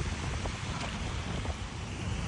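Wind noise on the microphone: a low, steady rush without distinct events.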